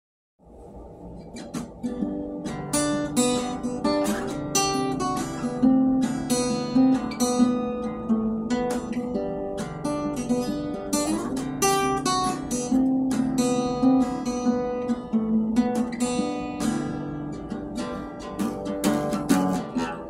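Acoustic guitar strumming chords as a song's instrumental intro. It starts softly and fills out after about two seconds, then carries on at an even level.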